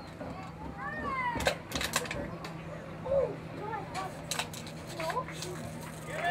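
Distant voices of players and spectators calling out across an open football field, with a few sharp clicks and a steady low hum underneath.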